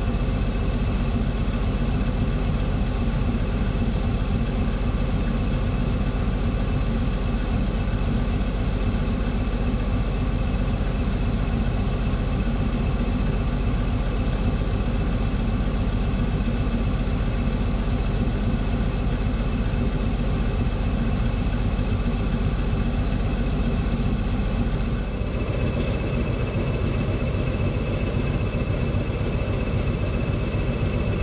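CP class 1400 diesel-electric locomotive idling steadily at a standstill. Near the end the sound shifts and a steady high-pitched whine joins the engine.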